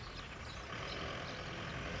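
Steady outdoor background noise, a low even rush that grows slightly louder about half a second in, with faint scattered clicks.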